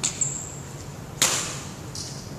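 Badminton racket striking a shuttlecock in a rally: a light hit at the start, then a loud, sharp smack about a second in that rings on in the large hall's echo.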